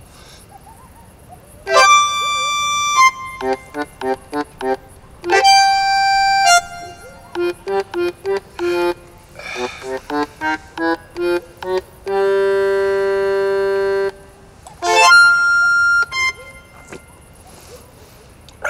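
A free-reed instrument plays a short, jaunty tune, starting about two seconds in. Held chords alternate with quick short notes, with a long held chord near the end and a few last notes after it.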